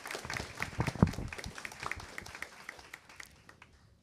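Applause from the panel and audience: many hands clapping, dying away over the last second.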